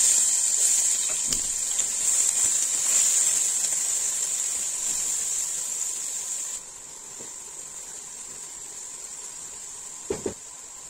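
Chopped onion sizzling in hot oil in a nonstick pot: a loud, steady hiss that starts the moment the onion hits the oil, then drops suddenly to a quieter sizzle about two-thirds of the way through.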